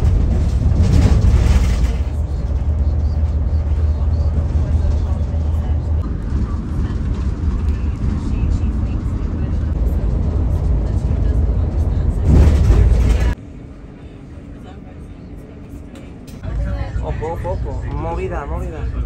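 Steady low road and engine rumble heard from inside a moving bus or coach on a main road, with louder rushes of noise about a second in and again around twelve seconds, then it cuts off abruptly.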